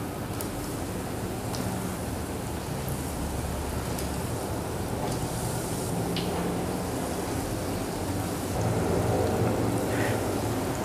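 Breaded potato croquettes frying in hot oil in a square non-stick pan: a steady sizzle as the croquettes are lowered into the oil one after another, a little louder near the end.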